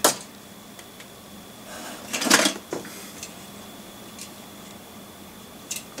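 Handling sounds of small diecast toy cars: a sharp click at the start, a brief rustle about two seconds in, and a few light ticks and knocks as a model is picked up from the desk.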